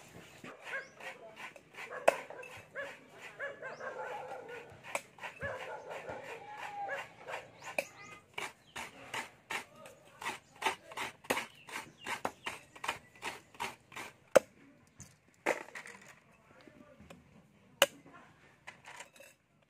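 Coconut meat being scraped out of a half shell with a blade, in quick even strokes about two or three a second, with a few sharper knocks near the end. Over the first several seconds an animal gives high, wavering whining cries.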